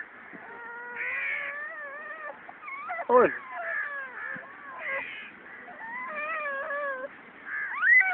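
A toddler crying in long, wavering wails, with a sudden loud cry that drops sharply in pitch about three seconds in.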